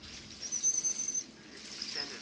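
Beluga whale whistle: one high, thin, steady whistle starting about half a second in and lasting under a second, with a fainter one near the end.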